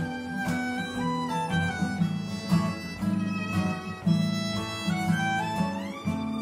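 A violin playing a slow, gliding melody over two acoustic guitars strumming chords, in a gypsy-jazz ballad. The violin slides up in pitch near the end.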